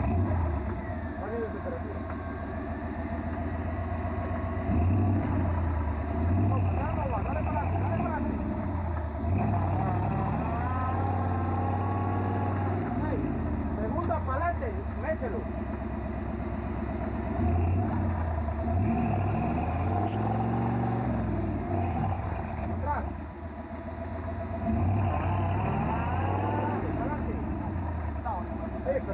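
Mud-bogging Jeep's engine revving hard, over and over, as its oversized tyres spin and churn in deep mud. The Jeep is stuck and not moving.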